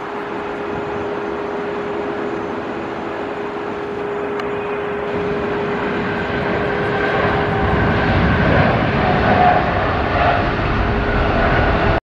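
Boeing 787-8 jet engines at takeoff power during the takeoff roll. A steady tone sits over a rush of engine noise that grows louder and deeper through the second half.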